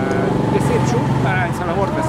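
A man talking over busy street noise, with other voices and road traffic running underneath.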